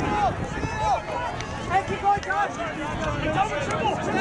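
Several ultimate frisbee players' voices, short shouted calls overlapping one another across an open field, with a low rumble of wind or handling noise beneath.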